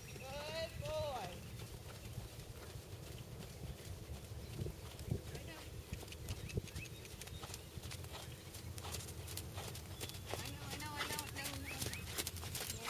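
Hoofbeats of a horse trotting on sand arena footing, a run of soft footfalls.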